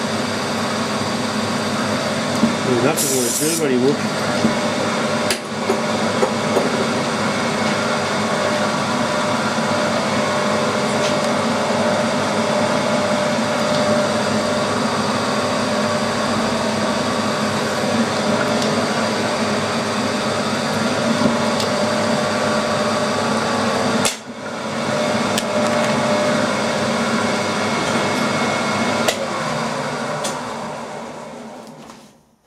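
Milling machine spindle running with a drill bit boring into an aluminium part held in a vise: a steady machine whine with many even tones, briefly cut off about six seconds before the end.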